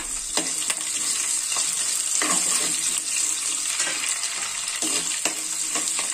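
Ginger, garlic, green chillies and curry leaves sizzling in hot oil in a clay pot (manchatti), stirred with a spatula that scrapes and clicks against the pot now and then.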